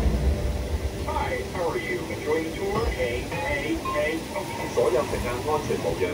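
Low rumble of a motion-simulator ride's soundtrack, easing off at the start, with voices talking over it from about a second in.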